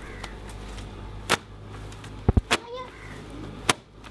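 Wet clothes being beaten by hand against a concrete washing slab: three sharp slaps about a second apart, with a couple of dull thuds between them.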